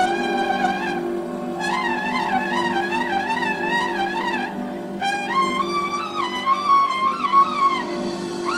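Trumpet solo over live band accompaniment. The trumpet plays phrases with quick wavering runs and pauses briefly about a second in and again near the five-second mark, over steady sustained low notes.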